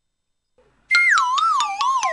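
Comic sound-effect stinger: a whistle-like tone that wobbles as it slides down in pitch, over quick even ticks about six a second. It cuts in from dead silence about a second in.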